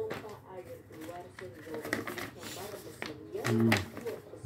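Indistinct talking in the room, with brief papery crackles as a sheet of the vacuum's paper instruction manual is handled and unfolded.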